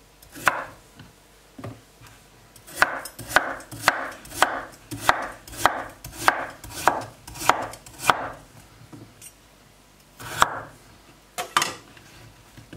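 Large kitchen knife chopping a carrot into rounds on a wooden cutting board: a regular run of knocks about twice a second for several seconds, then a few single cuts near the end.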